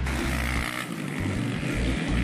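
Motocross dirt bike engines running, mixed with background music that has a steady bass line.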